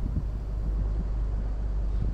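A boat's motor running steadily with a low rumble and a faint hiss above it.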